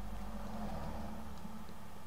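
Steady low hum with a faint hiss: the background noise of the recording microphone between words.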